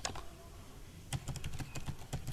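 Computer keyboard keys tapped in a quick run of keystrokes as a number is typed in, the run starting about halfway in.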